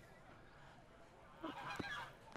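A short run of fowl calls about a second and a half in, after a near-quiet start.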